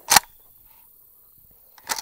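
Sharp clicks from handling an AK-pattern rifle that is still on safe, so no shot is fired: one click just after the start, then a quick cluster of clicks near the end.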